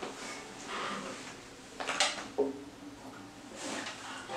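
Handling noise as an acoustic guitar is picked up and settled in the lap: rustling, with two sharp knocks about two seconds in.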